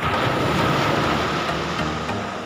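Small waves breaking and foaming up the sand close to the microphone: a loud rushing wash that sets in suddenly and holds steady.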